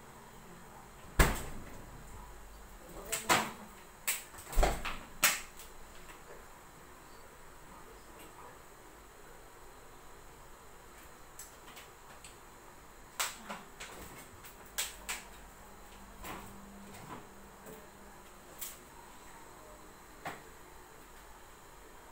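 Household knocks and clicks: a refrigerator door shutting with a thump about a second in, followed by several more sharp knocks over the next few seconds, then softer scattered clicks and taps as a plastic water bottle is handled.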